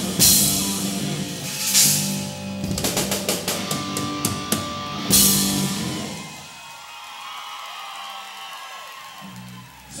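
Live rock band with drum kit and electric guitar, with a busy drum fill and a big cymbal crash about five seconds in. The music then rings out and dies away as the song ends.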